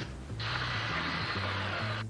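A drill running for about a second and a half, starting shortly in and cutting off abruptly just before the end, over soft background music.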